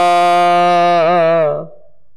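Sikh kirtan: a male voice holds one long sung note of the shabad, wavering slightly partway through, over a steady drone. The note fades out about three-quarters of the way through.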